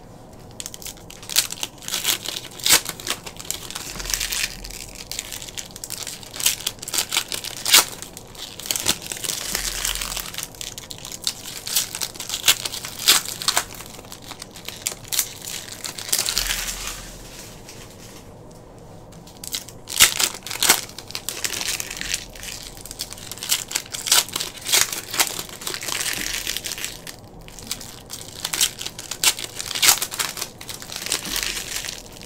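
Plastic wrappers of hockey card packs crinkling and tearing as the packs are handled and ripped open, in crackly bursts with a few short pauses.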